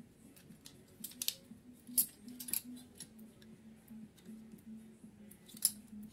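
Scattered sharp clicks and light knocks, a cluster a little after a second in, the loudest about two seconds in and another near the end, from a dust-clogged CPU heatsink and its plastic fan shroud being picked up and handled.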